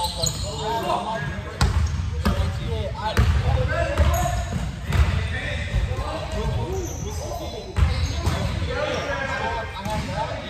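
A basketball bouncing with irregular thumps on a hardwood gym floor during a pickup game, with players' voices calling out, echoing in a large gym.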